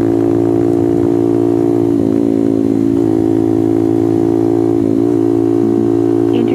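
Honda Grom's single-cylinder engine running at a steady pitch under way on a track, heard from a helmet-mounted camera, with brief wavers in the note about two and five seconds in.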